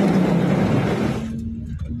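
Heavy rain pelting the car's roof and windshield, heard from inside the car, that cuts off abruptly a little over a second in as the car passes under an overpass; a low rumble of the moving car remains.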